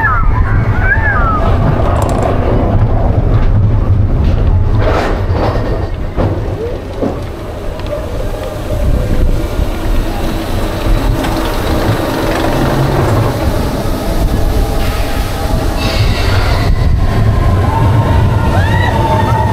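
Roller coaster train rolling along its steel track, a steady low rumble with wheel-on-rail noise that dips briefly partway through.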